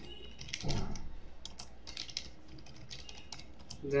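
Computer keyboard keys clicking in irregular runs of taps as a line of text is typed, with one short, duller low sound a little under a second in.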